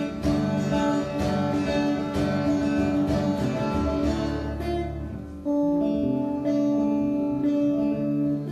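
Acoustic guitar strummed live with steady chord strokes; the playing softens about four to five seconds in, then full chords ring out again.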